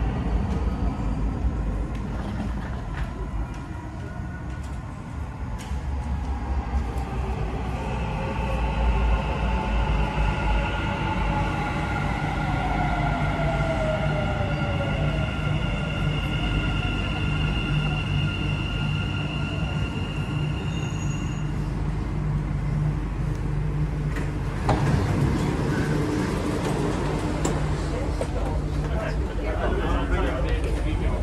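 Dubai Metro train pulling into the station: a steady low rumble with a whine that falls in pitch as it slows, and steady high tones that cut off about two-thirds of the way through. A few seconds later comes a louder rush of noise.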